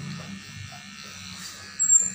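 Cordless electric hair clipper running with a steady low buzz while cutting around the ear. A brief, loud high-pitched sound comes near the end.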